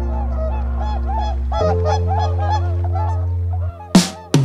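A flock of geese honking in quick succession over sustained ambient synth chords, the honks fading out about three seconds in. Near the end the chords drop away and a sharp loud hit lands.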